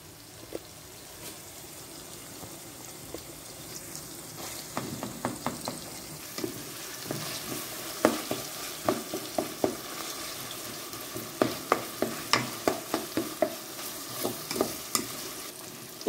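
Chopped onion, green pepper and sun-dried tomato sizzling in oil in an aluminium pot, with a wooden spoon scraping and knocking against the pot as it stirs. The spoon strokes start about five seconds in and come a couple of times a second.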